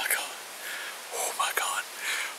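A man whispering close to the microphone in short, breathy phrases.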